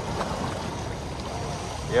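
Steady wash of choppy seawater around a small open fishing boat, an even rushing noise with no distinct events.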